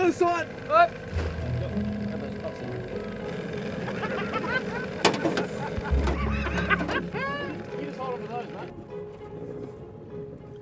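Men's voices calling out briefly over background music, with one sharp knock about five seconds in.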